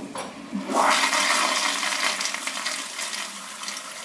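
Toilet flushing: a rush of water that swells up under a second in and slowly fades, ending abruptly.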